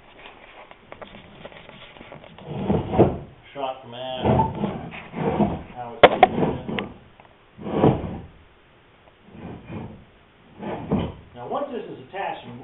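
A man talking, the words unclear, with a single sharp knock about six seconds in.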